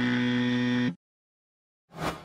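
Electronic outro sound effects: a steady low electronic tone lasting about a second that cuts off abruptly, then silence, then a sudden struck hit near the end.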